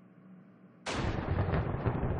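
Quiet room tone, then a sudden loud blast of noise less than a second in that carries on as a rumble with crackles through it.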